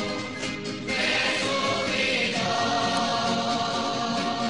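Choir singing a hymn in held notes, with a brief break between phrases near the start.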